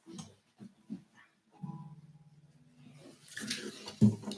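Acoustic guitars being handled: a few soft knocks, then the strings ring briefly when bumped, about one and a half seconds in, and fade away.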